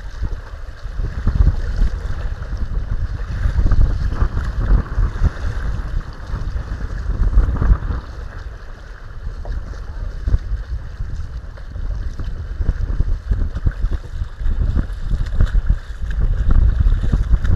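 Gusty wind buffeting the microphone, rising and falling in strength, with choppy water lapping and splashing against a kayak hull.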